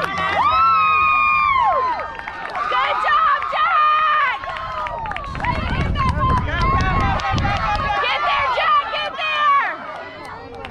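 Spectators shouting and cheering on young baseball players running the bases: many overlapping, high-pitched voices holding long yells.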